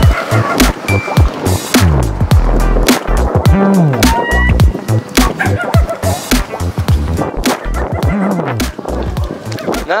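Dense knocking and clattering with low thumps, fitting walking and handheld-camera jostling on a concrete paver street, over music and voices in the background.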